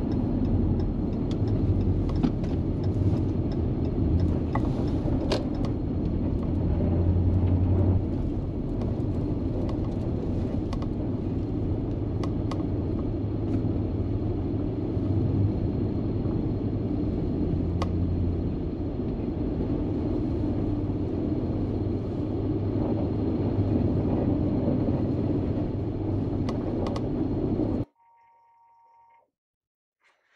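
Steady engine and tyre rumble heard from inside a moving vehicle's cabin, with scattered light ticks. It cuts off suddenly near the end, leaving near quiet with a faint short tone.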